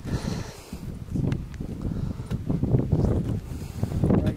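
Wind buffeting the microphone: an irregular, gusty low rumble with a few sharp clicks.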